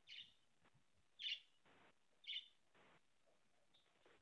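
Near silence broken by three short, faint, high chirps about a second apart, like a small bird calling.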